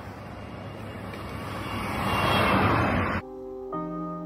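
Outdoor rushing noise swells to its loudest about two and a half seconds in, then cuts off abruptly. Soft piano music follows, with notes entering just after three seconds.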